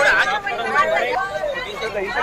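People talking over one another: the chatter of a small group at close range.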